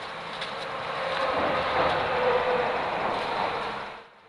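Interstate traffic noise from the roadway above a wildlife underpass: a rush of tyre and engine noise that swells to its loudest about halfway through and then fades.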